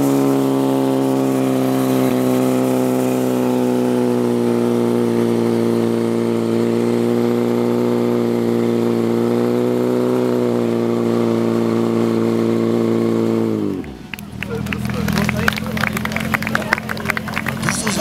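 Portable fire-sport pump engine running at full revs with a steady high note while pumping water to the hoses. About fourteen seconds in the revs fall away sharply to a low idle.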